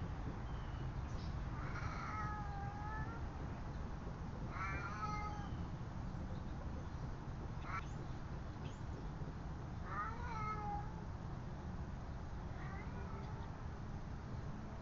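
A cat meowing four times, a few seconds apart, the last call fainter, over a steady low background rumble.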